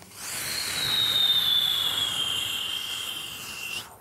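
A man's vocal imitation of a jet airliner taking off, made with his hands cupped over his mouth: a rushing roar with a high whine that slowly falls in pitch. It builds over the first second and cuts off sharply just before the end.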